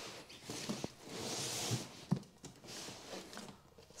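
Rustling and scraping of the rolled-up TPU packraft being slid out of its cardboard box, with a longer hiss of material rubbing about a second in and a few light clicks and knocks around two seconds, going quieter near the end.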